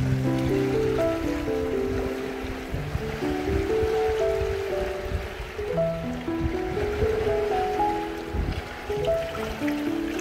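Background music, a slow melody of held notes, with a low rumbling wash of shallow seawater underneath.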